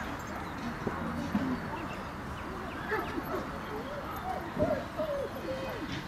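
A dog giving a run of short, high whines, each rising and falling in pitch, coming thickly in the second half.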